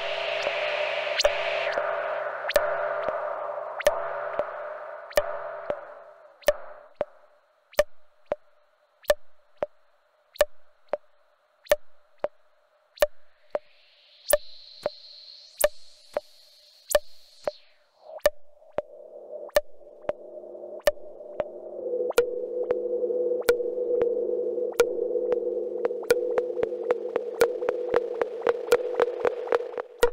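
Dreadbox Dysphonia semi-modular synth playing a patched sound: a steady train of sharp clicks, about one and a half a second, over a held tone and a noisy drone that fades out about six seconds in. In the middle a high tone rises, holds and cuts off; then a deeper drone comes back and the clicks speed up near the end.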